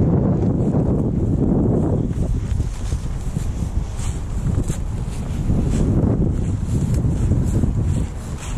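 Wind buffeting the camera microphone: a loud, gusting low rumble that rises and falls.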